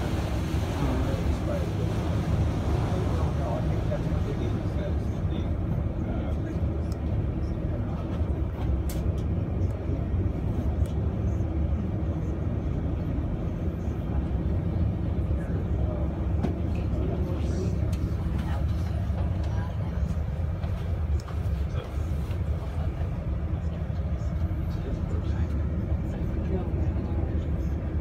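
Passenger boat's engine running with a steady low rumble, heard from inside the boat's cabin as it cruises along the river.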